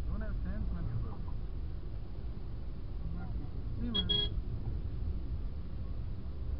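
Steady low rumble of a car in slow traffic, heard from inside the cabin, with a short vehicle horn beep about four seconds in.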